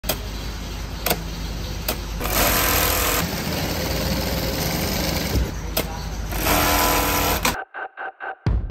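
Industrial sewing machines stitching heavy bag fabric and webbing: a steady motor hum with louder runs of stitching, broken by a few sharp clicks. It stops abruptly just before the end.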